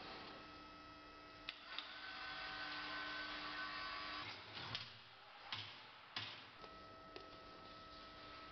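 Faint steady hum of workshop machinery, with a few short clicks and knocks from the tire and machine being handled, the louder knocks in the second half.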